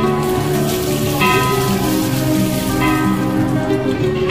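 Water poured from a metal pot splashing over a stone Nandi statue for about three seconds, then tailing off, over steady devotional music.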